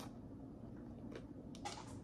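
Quiet chewing of a bite of Take 5 candy bar, with a brief louder noisy sound near the end.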